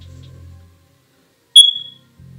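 A single short, high-pitched electronic beep, sudden and loud, fading away within about half a second.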